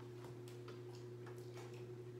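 Steady hum of the swim spa's pool equipment, with a run of light, irregular ticks, about four or five a second.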